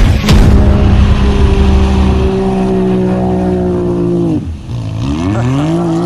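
A side-by-side off-road vehicle's engine with a heavy low rumble at first, then a steady, slowly sinking pitch. It drops off about four seconds in, then revs up and down repeatedly.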